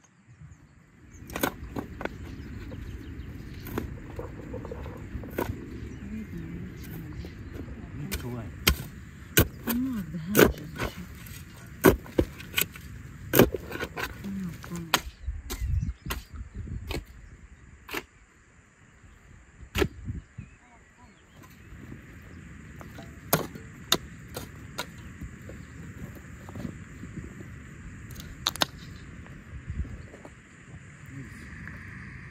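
A long-handled hoe chopping and scraping into loose, stony soil, making irregular sharp strikes over a low background rumble.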